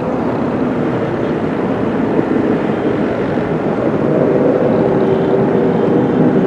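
Steady running drone of a bus engine and road noise, heard from inside the passenger cabin. A faint held tone comes in over the last couple of seconds.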